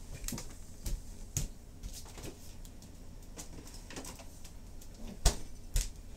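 Scattered short knocks and clicks of household handling, the loudest a sharp knock just over five seconds in.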